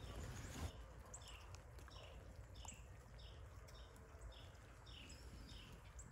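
Near silence outdoors, with a small bird faintly repeating short, high, downward-slurred call notes, about one and a half a second.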